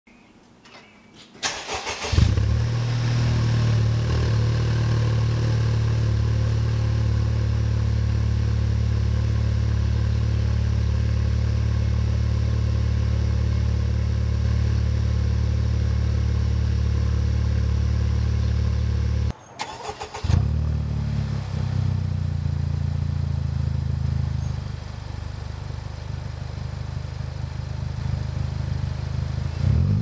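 Honda Civic Type R FK8's turbocharged 2.0-litre four-cylinder cold-starting through a Kakimoto Racing Regu.06&R exhaust: a brief crank about two seconds in, then a loud, steady fast idle. After a short break in the sound there is a second start, and a few seconds later the idle settles lower.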